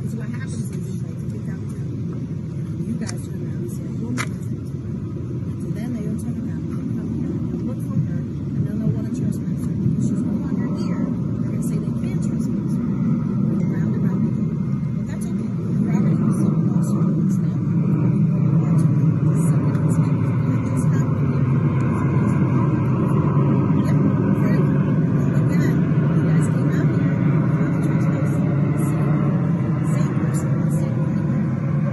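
Voices of a woman and a man arguing, heard from inside a patrol car, over a steady low rumble of the car's idling engine.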